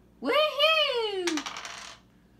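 A child's voice holds a drawn-out note that rises and falls for about a second. Then a game die clatters briefly across the tabletop as it is rolled, a quick run of small clicks.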